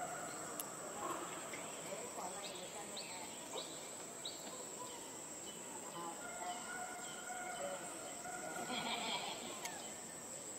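Steady, high-pitched drone of insects with a few short bird chirps scattered through it.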